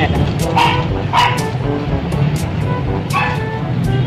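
A dog barking a few short, sharp barks, over steady low street noise.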